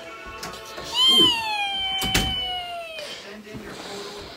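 A single long, high-pitched vocal call lasting about two seconds, rising briefly and then gliding slowly down in pitch, with a sharp click partway through.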